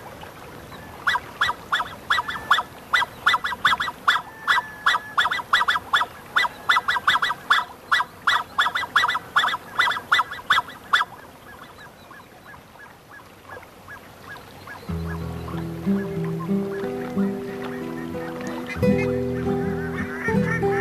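Black-necked swans calling: a rapid series of short, repeated calls, two or three a second, that stops about eleven seconds in. Background music with held low notes comes in about fifteen seconds in.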